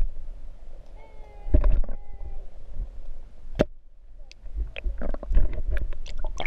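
Muffled sound of a camera held underwater in a shallow river: low rumbling and gurgling, with sharp knocks about a second and a half in and again about three and a half seconds in, and a run of knocks near the end.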